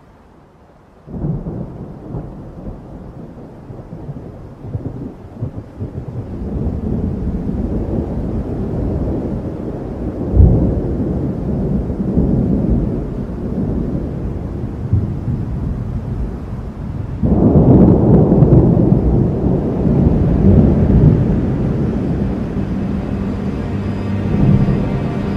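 Thunder rumbling: a low rolling rumble starts suddenly about a second in and swells, with a sharp loud peak near the middle, then grows louder again from about seventeen seconds.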